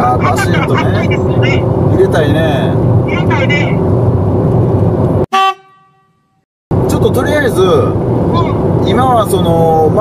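Steady wind and engine noise of motorcycles riding at speed on an expressway, with voices talking over it. About five seconds in there is a short toot, then the sound cuts out to silence for about a second and a half before the riding noise returns.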